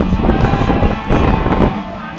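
Electric desk fan running right at the microphone, its airflow buffeting it with a low rumble over a steady motor hum; the rumble drops away shortly before the end.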